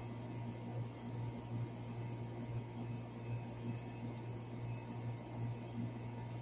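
Miller packaged air-conditioning unit running with its newly replaced condenser fan motor: a steady low hum that swells about once a second, over an even rush of moving air.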